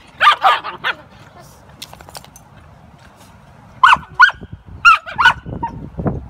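Australian Cattle Dogs barking in short, sharp yaps: a quick cluster right at the start, then four single barks in the second half.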